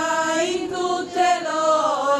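Voices singing a slow religious chant together in one melody, with long held notes that change pitch a few times and slide near the end.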